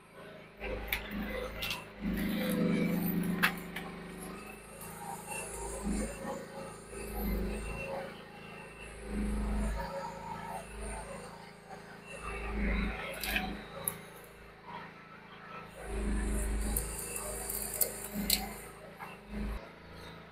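Groundhog mini excavator working in brush, its engine note swelling and easing in surges every couple of seconds as the hydraulics take load, with a few sharp cracks and knocks scattered through.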